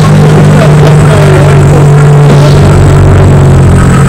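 Car engine idling steadily with a low hum, settling slightly lower in pitch near the end.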